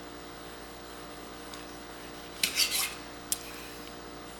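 Chef's knife cutting through raw geoduck meat on a cutting board: one short scraping stroke of the blade against the board about halfway through, then a single sharp tap of the blade on the board.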